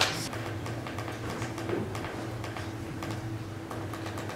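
Steady low hum of room tone, with a sharp click at the very start and a few faint clicks scattered through.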